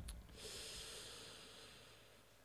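A soft thump at the very start, then a person breathing out through the nose in a long, faint hiss that fades over about a second and a half.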